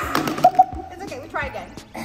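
A boy and a woman exclaiming and laughing with excitement, over background music with a steady beat.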